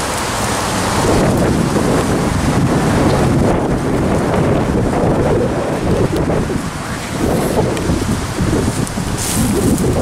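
Wind buffeting the camera's microphone: a loud, gusting low rumble.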